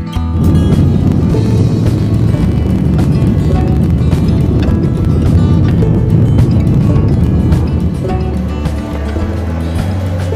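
Jet airliner's engines at takeoff thrust, heard from inside the cabin: a loud steady rumble that starts suddenly and eases about eight seconds in. Background music with a steady beat plays over it.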